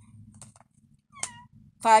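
A cat giving one short, high mew about a second in, preceded by a few faint clicks.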